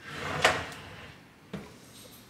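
A cabinet drawer sliding on its runners and stopping with a sharp knock about half a second in, followed by a lighter click about a second later.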